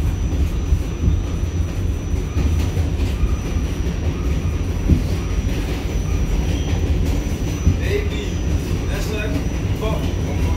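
Inside an R46 New York City subway car under way: a steady, loud low rumble of wheels and running gear, with a thin high whine and a few sharp knocks from the rails, about one every couple of seconds or less. Faint passenger voices come in near the end.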